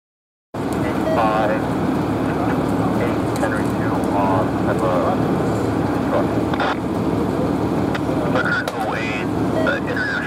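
Loud, steady rumble and hum at a fully involved box-truck fire, with distant voices calling out now and then. The sound cuts in suddenly about half a second in.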